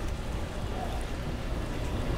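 Dishwasher running in the background: a steady low hum with an even hiss.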